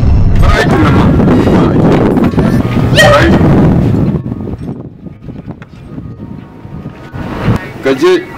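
Voices over background music, loud for the first half and much quieter after about four seconds.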